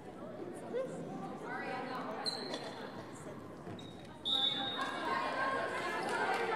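Voices of players and spectators talking and calling out in a reverberant school gymnasium during a volleyball match. Two short, high, steady tones sound about two and four seconds in, and the voices get louder from about four seconds in.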